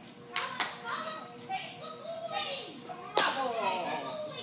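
Indistinct voices talking, with sharp knocks about a third of a second in, just after half a second, and a little after three seconds.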